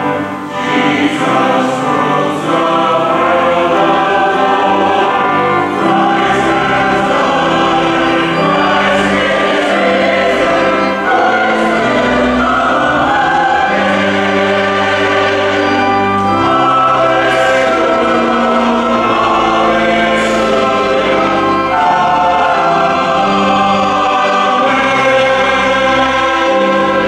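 Mixed church choir of men's and women's voices singing an anthem in sustained chords.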